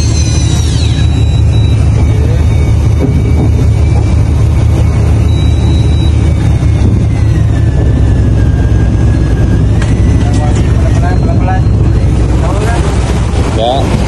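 Fishing boat's engine running steadily at a low hum, with wind and sea noise on the microphone.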